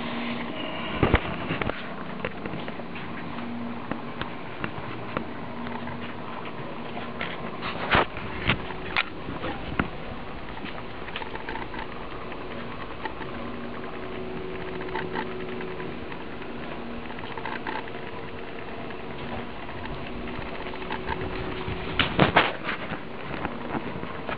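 Small electric motor humming steadily, with a few sharp clicks and knocks about a second in, around eight to nine seconds in, and near the end.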